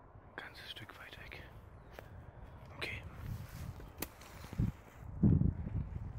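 A man whispering briefly, then a few sharp clicks and a run of low thumps, loudest about five seconds in, as he moves slowly closer while stalking deer.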